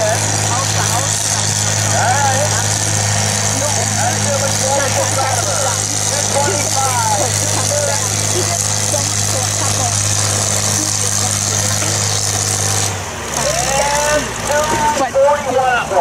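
Farm tractor engine running steadily under load during a tractor pull. About thirteen seconds in, the engine note drops off as the pull ends. People's voices can be heard over it, louder near the end.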